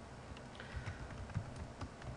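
Computer keyboard being typed on: a handful of separate, unevenly spaced keystrokes, faint.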